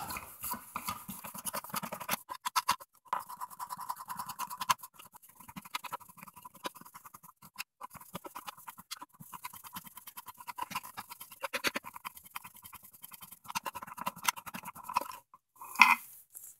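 The fan flywheel of a ProForm Whirlwind exercise bike is spun by hand on its destroyed caged ball bearing, giving a fast, uneven crunching and clicking grind with a faint whine in places. The bearing's cage is fractured and its loose balls grind in the race as the reverse-threaded race is worked free.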